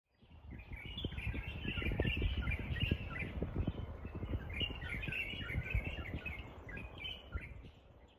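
Birds chirping and twittering in quick, repeated calls over irregular low rumbling and thumping, fading out near the end.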